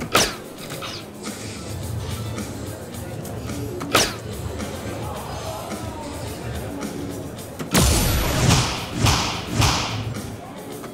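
Soft-tip darts hitting an electronic dartboard: two sharp hits about four seconds apart, then a louder, noisier stretch of about two seconds near the end as the third dart scores a triple. Background music plays throughout.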